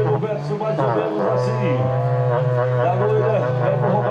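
Two berrantes, long cattle-horn trumpets, blown together: a steady low note held throughout, with higher tones wavering in pitch over it.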